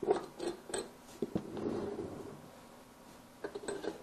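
Cast steel bench vise being handled on its swivel base: a few light metal clicks from the base lockdown handle, then a short soft scraping as the vise turns on the base.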